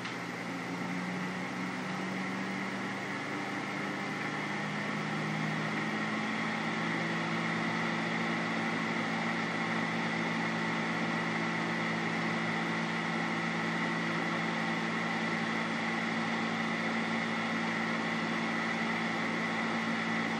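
A steady machine-like hum with several low tones that shift in pitch over the first few seconds and then hold, growing slightly louder.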